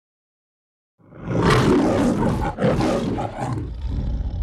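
The MGM logo's lion roaring: silence, then about a second in a loud roar that breaks briefly and roars again.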